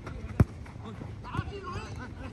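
A football kicked once on an artificial-turf pitch, a single sharp thud about half a second in, followed by players shouting.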